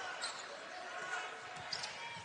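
Game sound in a basketball arena: a steady crowd murmur with faint voices, and a few faint knocks of a basketball bouncing on the hardwood court.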